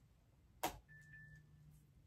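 A single short click about two-thirds of a second in, over quiet room tone, followed by a faint, thin high tone lasting about half a second.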